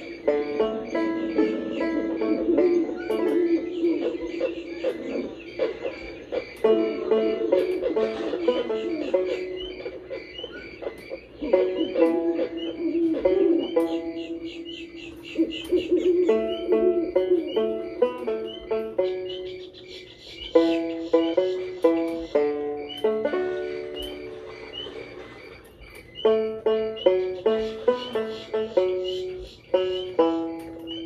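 Plucked banjo tune from the ride's bayou scene, played back from a vinyl picture-disc record on a turntable.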